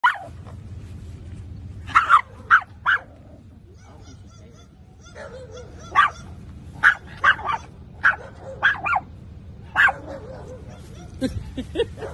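A small dog barking: short, sharp, high yaps in quick bursts of two to four, with a pause of about two seconds in the middle.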